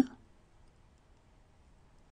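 The last instant of a spoken word cuts off right at the start, followed by near silence.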